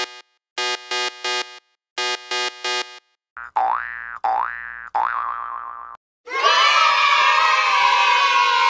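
Cartoon-style intro sound effects: a short electronic three-note beep figure repeated three times, then three springy rising 'boing' sounds, then a burst of children cheering that starts about six seconds in.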